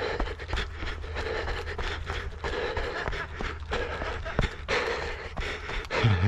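A trail runner breathing hard in a steady rhythm of heavy pants while running downhill, with quick footfalls on a rough fell path.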